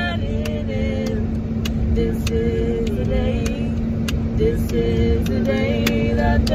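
Wordless singing: held melodic notes without words between sung lines of a gospel song. Under it run a steady low hum and a heavy low rumble, and sharp clicks come every half second to second.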